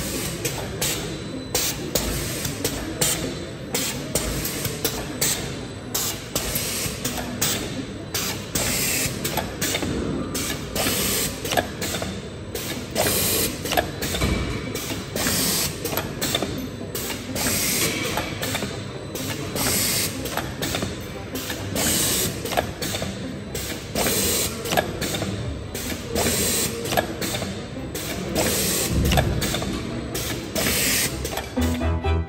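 Volumetric pasta depositor running: a continuous mechanical clatter of many quick, irregular clicks over a steady machine noise.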